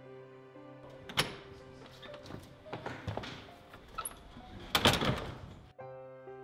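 Soft background music with held notes, over which a wooden door is handled: a few sharp knocks and clatters, the loudest a thud with a rattle just before the end.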